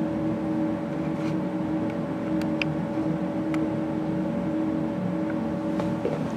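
Steady mechanical hum of the lab's ventilation, holding a few even tones at a constant level, with a few faint ticks near the middle.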